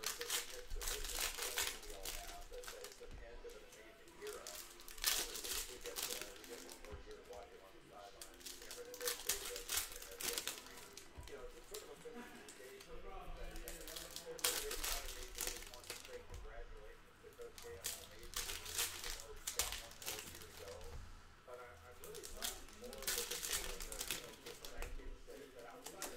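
Foil wrappers of Panini Contenders basketball card packs being torn open and crinkled in the hands, in bursts of crackling every few seconds as pack after pack is opened.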